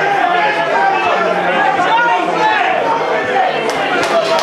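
Spectators at a football match talking all at once, a steady babble of overlapping voices with no words standing out. A short, sharp knock comes near the end.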